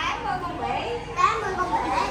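Indistinct talk from a group of children and adults, children's high voices the loudest, with a sharper burst about a second and a quarter in.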